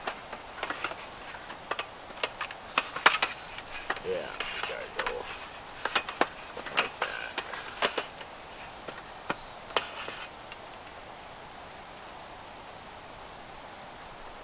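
Aluminum slats of a roll-up camp tabletop clicking and clattering against each other as they are handled and strapped into a bundle. A quick, irregular series of light metallic clicks and knocks stops about ten seconds in.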